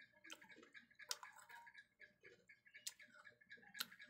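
Near silence with a few faint, irregular clicks from a person chewing food: small mouth and lip clicks.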